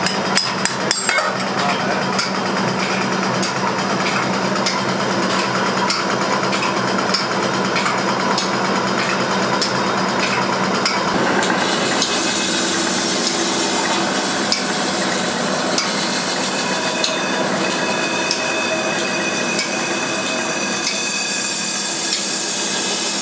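Workshop lathe running steadily while a hand-held cutting tool scrapes against a spinning metal pan, with scattered clicks from the tool; the sound changes about halfway through.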